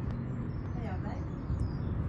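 Faint, indistinct voices over a steady low rumble, with a brief faint pitched sound that rises and falls about a second in.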